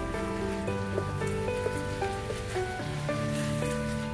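Water spraying in a shower pattern from a garden hose nozzle onto potted plants, a steady hiss, under background music.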